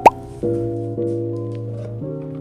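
A short, loud rising 'bloop' sound effect right at the start, then soft background music with held chords.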